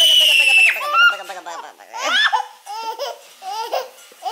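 Toddler laughing while being tickled: a long, high-pitched squeal that breaks off under a second in, then a run of short giggles.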